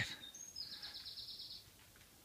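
A small bird singing faintly: a short high whistle, then a rapid high trill that lasts about a second.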